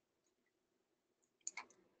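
Near silence, with two or three brief faint clicks about a second and a half in.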